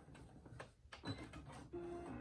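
Computerized sewing machine finishing a seam: a few faint mechanical clicks and a short low hum near the end.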